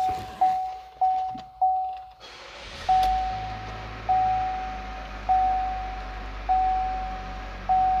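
A dashboard warning chime repeating quickly, then about two seconds in the 2019 Chevrolet Cruze's 1.4-liter turbocharged four-cylinder cranks and starts right up, settling into a steady idle. The chime carries on over the idle at a slower pace, a little over one a second.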